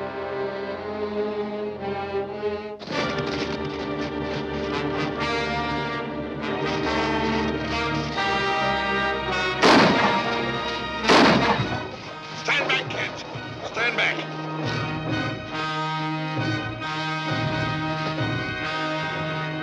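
Orchestral film score with brass, broken about ten seconds in by two loud gunshots about a second and a half apart, with smaller sharp cracks after them.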